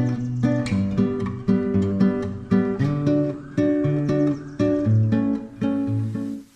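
Intro music: an acoustic guitar strumming chords at a steady pace, about two strums a second.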